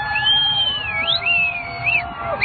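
High-pitched whistles from a crowd, swooping up and down in pitch over the general noise of the crowd.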